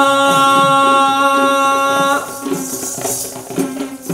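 Traditional Sri Lankan dance music: a voice holds one long sung note for about two seconds over the steady beat of Kandyan drums. The voice then stops and the drums carry on alone with a high jingling over them.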